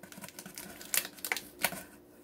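Clear packing tape being picked at and peeled off a cardboard box, giving a few sharp crackles and clicks.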